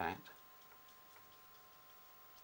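A spoken word ends, then quiet room tone: a faint steady hum with a few soft, irregular ticks.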